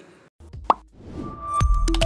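A short rising electronic blip, then a TV station's closing jingle fading in: electronic music with deep bass, clicking beats and held synth notes, getting louder near the end.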